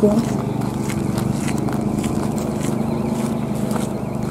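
A steady low mechanical hum made of several held low tones with a fine even pulse, like an engine running at idle; one of the explorers wonders whether it could be a truck.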